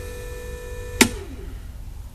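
Steady hum of the additive injection pump running, cut off by a sharp click about a second in, with a short falling whine as it spins down: injecting has been stopped.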